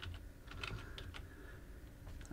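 Computer keyboard typing: a few faint, separate keystrokes as digits are entered.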